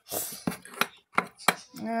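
Hard plastic case and USB plug being handled on a tabletop: a brief rustle, then about four sharp plastic clicks and knocks.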